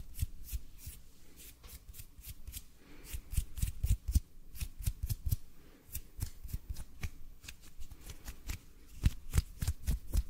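Close-up hand sounds right at a microphone: fingers and palms rubbing and tapping together in a quick, irregular run of soft crackly clicks and rustles, a few louder about a third of the way in and near the end.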